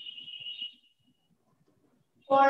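Whiteboard marker squeaking against the board as it writes: a thin, high squeal that fades out a little after a second in, leaving only faint taps.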